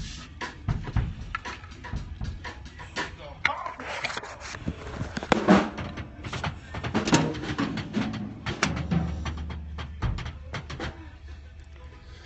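A drum kit played in quick, uneven strikes on drums and cymbals, with murmured voices around it.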